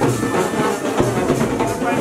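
Live marching band playing: brass horns carry a held melody over repeated drum beats.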